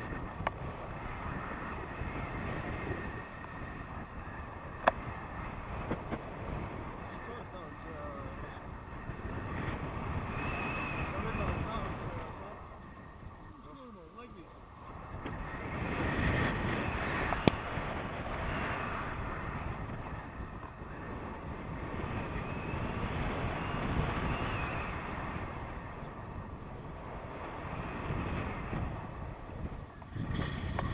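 Airflow rushing over a selfie-stick camera's microphone in tandem paraglider flight, rising and falling in waves and easing off for a couple of seconds about halfway through. Two sharp clicks, one early and one just past the middle.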